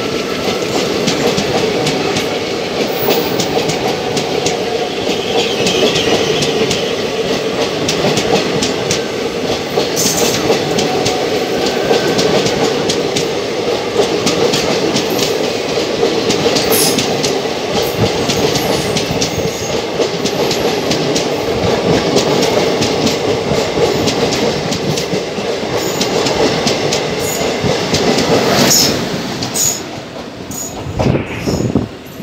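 Two passenger trains crossing at speed on adjacent tracks, heard from the open doorway of a coach of one of them: a loud, steady rush of steel wheels on rails with rapid clickety-clack as the wheels cross rail joints, while the blue passenger coaches of the other train stream past close by. The sound drops about a second before the end.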